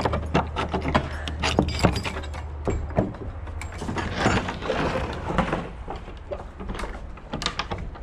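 An iron slide bolt on an old wooden plank barn door is drawn back with a run of metallic clanks and knocks. The heavy door is then pulled open with a rough scraping noise about halfway through.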